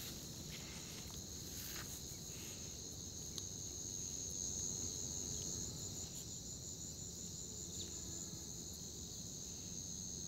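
Insects chirring steadily at a high pitch in two bands, the higher one turning into a fast pulsing trill for a few seconds past the middle, over faint low background noise.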